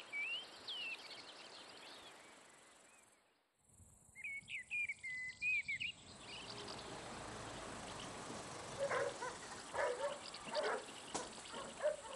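Small songbirds chirping and singing in quick, sliding phrases, faint, with a short silent gap about three seconds in. In the second half a steady hiss continues, with a few lower calls.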